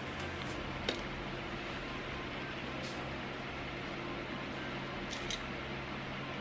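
Steady low hum of room tone with faint handling sounds from pinning fabric by hand, including a sharp click about a second in and a few light ticks near the end.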